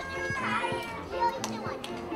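A large group of young children chattering and calling out all at once, many small voices overlapping, with scattered light clicks.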